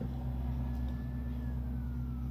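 Faint distant emergency-vehicle siren: a thin tone comes in about a third of the way through and slowly falls in pitch, over a steady low hum.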